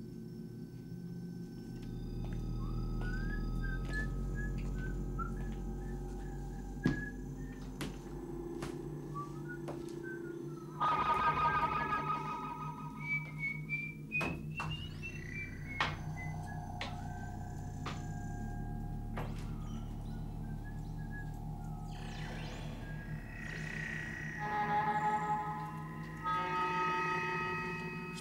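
Electronic science-fiction music and sound effects: a warbling, theremin-like tone wanders up and down over steady electronic hums, broken by a few sharp clicks. Denser clusters of buzzing tones come in about eleven seconds in and again near the end.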